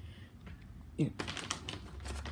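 A woman says "here", then rapid crisp clicking and crackling from dog treats as a small chihuahua takes a chew treat and bites into it.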